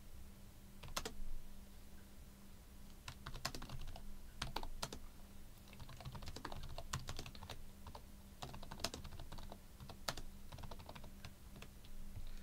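Typing on a computer keyboard: quiet, irregular keystrokes coming in short runs.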